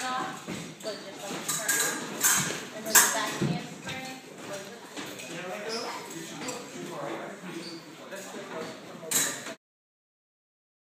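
Indistinct voices talking in a large room, with several sharp clicks and knocks scattered through; the sound cuts off suddenly near the end.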